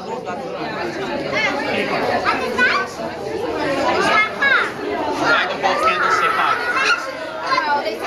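Many voices of children and adults talking over one another at once, a steady busy chatter with no single speaker standing out.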